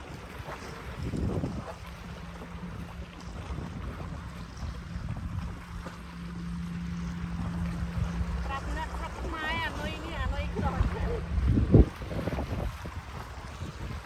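Wind buffeting the microphone and small waves lapping against shoreline rocks. A steady low hum runs under it until late on, and there is one sharp thump near the end.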